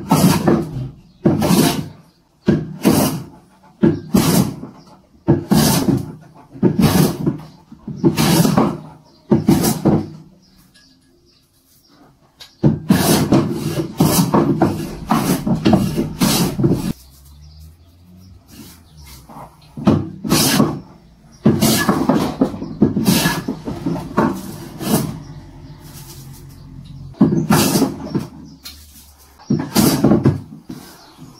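A Draper Expert No. 5 bench plane shaving a rough wooden block in a series of push strokes, about one every second and a half, with a short pause and then a longer unbroken run in the middle. The plane is cutting down the raised spots of the rough surface to make it flat and smooth.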